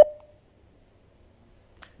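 A steady phone-line beep ends at the very start and dies away quickly, then the line sits in near silence with a faint click just before the end, while no caller answers.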